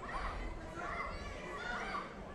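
High-pitched voices calling and shouting across a large sports hall, over a low rumble of hall noise.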